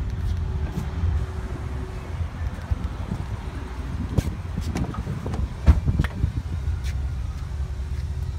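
Rear side door of a GMC Yukon Denali XL being unlatched and opened by hand: a few clicks, then a sharp clunk a little before six seconds in, over a low steady rumble.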